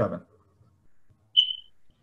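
A single short, high electronic beep about one and a half seconds in, lasting about a third of a second and fading out. It follows the tail end of a spoken word.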